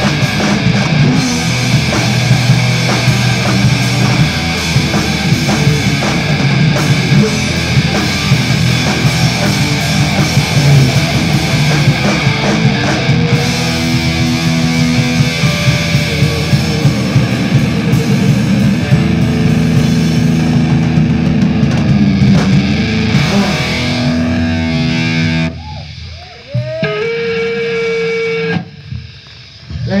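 Live punk/metal band playing loud, with distorted electric guitars, bass guitar and fast drums. About 25 seconds in, the drums drop out and a single guitar note is held and rings as the song ends.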